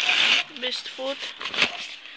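Rustling and crackling of a woven plastic feed sack being handled, with a few sharp crinkles about one and a half seconds in. Brief murmured voice sounds come in between.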